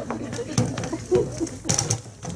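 Wooden bentwood chairs being set down on a wooden stage floor and sat on: a few short knocks and scrapes of the chair legs, the sharpest near the end, with a low voice sound in between.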